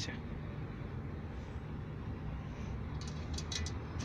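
Steady low rumble of distant traffic, with a few faint short clicks about three seconds in.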